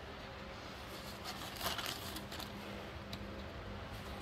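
Paper rustling as a model-kit instruction booklet is handled, a brief burst of crinkling loudest a little under two seconds in, over a faint steady low hum.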